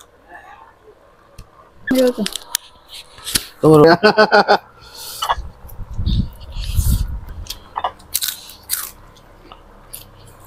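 A person chewing and crunching food close to the microphone, with soft clicks and smacks, between a few spoken words.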